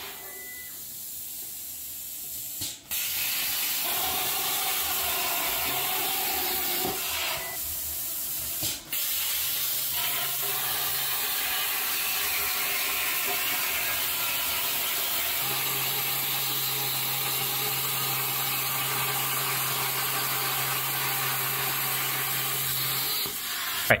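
CNC plasma cutter cutting quarter-inch steel plate: a steady loud hiss of the arc and air, broken off briefly a few times early on, with a low steady hum joining in for stretches in the second half.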